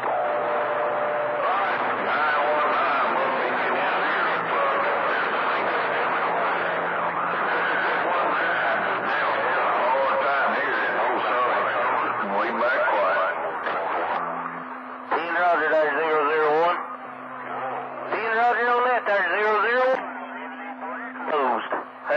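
CB radio receiving channel 28 skip: a dense, noisy wash of garbled, overlapping transmissions from distant stations. About fifteen seconds in it gives way to a clearer, wavering voice over a steady low tone.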